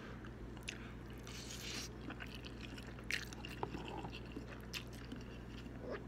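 A man chewing a mouthful of spicy noodles close to the microphone, with scattered small wet mouth clicks and soft brief hisses.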